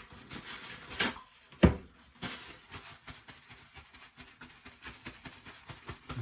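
A paper towel rustling and crinkling as it is handled and used to dry a freshly shaved face. There is one sharp knock about a second and a half in, and small scattered clicks.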